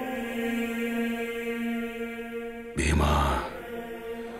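A male singer holding one long, steady, chant-like note in the song's opening. About three seconds in, a loud, deep percussive hit cuts across it, and the note carries on afterwards.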